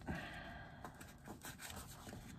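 Faint rustling and rubbing of brown kraft paper as fingers press it flat along a folded edge.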